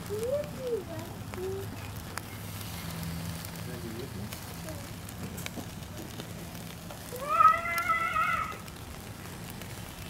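Burger patties sizzling and crackling over charcoal on a small kettle grill. About seven seconds in, a high-pitched voice calls out briefly.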